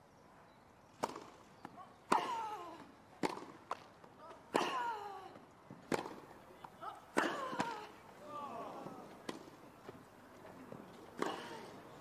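Tennis ball struck back and forth with rackets in a baseline rally on a grass court, about nine sharp hits a second or so apart, with a short falling grunt from one player on every other shot.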